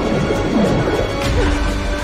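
Film score playing over the loud splashing of a swimmer's arm strokes in rough sea, with a deep rumble underneath.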